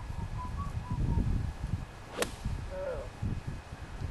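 Golf club striking a golf ball: a single sharp, crisp crack about two seconds in, with wind rumbling on the microphone.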